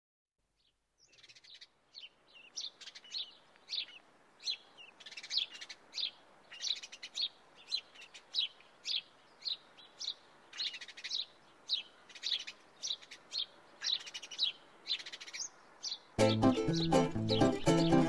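Birds chirping, short high calls repeated one after another at a fairly quick pace. About two seconds before the end, an acoustic song intro with a plucked string instrument comes in, louder than the birds.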